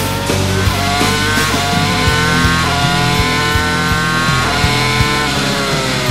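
Onboard sound of a Williams-BMW Formula One V10 engine at full speed, its pitch climbing and dropping back at each upshift every second or two. Rock music with a steady drum beat plays alongside.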